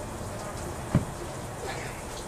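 A single sharp thump about halfway through, against a faint steady background hiss.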